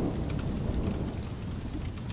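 Thunderstorm ambience: steady rain with a low rumble of thunder that slowly fades away.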